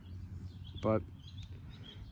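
Faint outdoor background with birds chirping quietly and a steady low hum, broken by one short spoken word about a second in.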